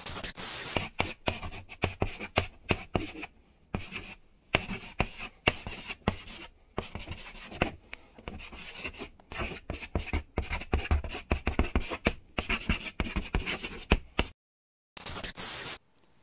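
Chalk writing on a blackboard: quick runs of tapping and scratching strokes, with a short pause near the end before one last brief stroke.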